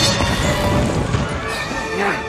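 Film score playing under a fight between two owls: shrill owl cries that bend in pitch, with scuffling sound effects.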